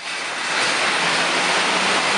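Chain-driven Xebex air bike pedalled hard, its fan wheel rushing air steadily after building up over about the first half second, with a faint low hum underneath. This chain-drive bike is kind of loud, louder than belt-driven bikes whose only noise is the air through the fan.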